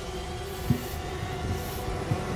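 Dark, low rumbling drone from a horror film score, with several steady held tones over it and a few soft low thuds, one of them a little under a second in.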